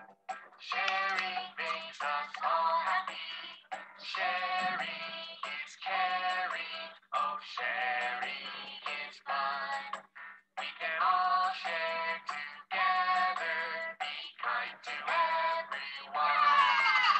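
Children's nursery song about sharing, a sung melody over a music backing, in short phrases with brief pauses between them ("Sharing makes us all happy", "Oh sharing is fun", "Be kind to everyone"). A steady low hum sits underneath.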